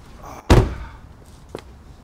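A car door slammed shut once, about half a second in: a single loud thud with a short ringing tail, followed by a faint click.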